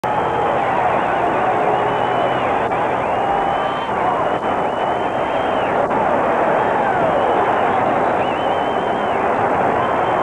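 A large stadium crowd cheering a home run, with steady noise from many voices. Shrill whistles glide up and down above it.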